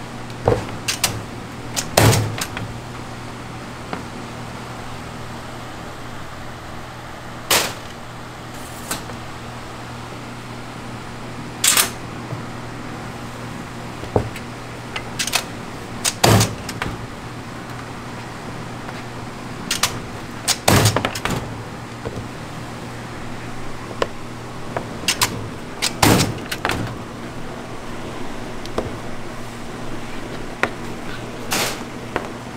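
Hard candy forming machine running with a steady low hum. Sharp clacks and knocks come at irregular intervals every few seconds as a rope of pink hard candy is fed through it, the loudest about two seconds in.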